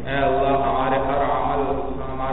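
A man's voice chanting in long, drawn-out melodic phrases.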